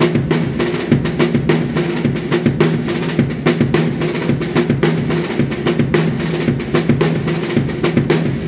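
Tama drum kit played in a fast, continuous linear groove: hands on snare and toms woven through bass drum strokes, with double strokes on the opening two hits.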